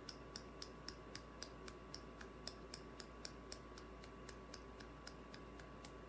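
Faint, light taps of interlaced fingers knocking together in a steady rhythm, about four a second: an acupressure hand-tapping exercise.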